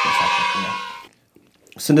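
A voice held in one long, high-pitched, drawn-out sound that fades out about a second in, followed by a moment of near silence.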